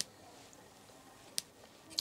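Quiet room tone with one short, sharp click about one and a half seconds in.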